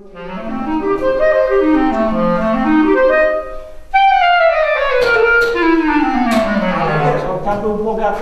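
Clarinet-led woodwind music in several parts, playing fast descending runs; a new phrase starts high about halfway through and runs down again.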